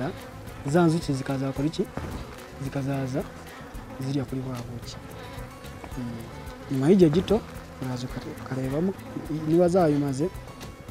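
Honeybees buzzing around an opened hive as a frame is lifted out. Individual bees flying close past the microphone give repeated buzzes that swoop up and down in pitch over a steadier hum.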